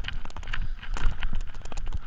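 Mountain bike clattering over a rocky downhill trail: a rapid, irregular run of sharp knocks and rattles from the tyres, chain and frame hitting rocks, over a steady low rumble.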